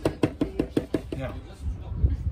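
A man laughing in a quick run of short, sharp bursts, about six a second, that die away about halfway through.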